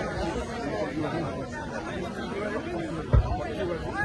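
Overlapping chatter of many people talking at once, no single voice standing out. A short low thump about three seconds in is the loudest sound.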